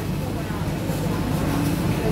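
Market background noise: a steady low hum with faint voices of other people.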